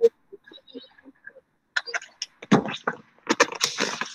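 A paper picture book being handled and lowered: a click, then a run of irregular rustling and knocking from about halfway through.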